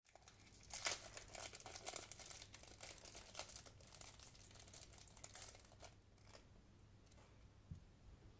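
Small clear plastic packet of stick-on gems crinkling in the fingers as it is handled and worked open, loudest about a second in and dying away by about six seconds. A soft knock near the end.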